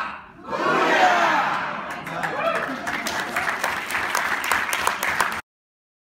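Theatre audience laughing and calling out, then breaking into applause about two seconds in, with many hands clapping over the voices; the sound cuts off suddenly near the end.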